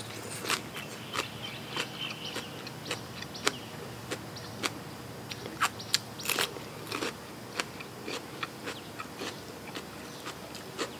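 Close-up mouth sounds of chewing and biting crisp raw vegetables, with irregular sharp crunches every second or so.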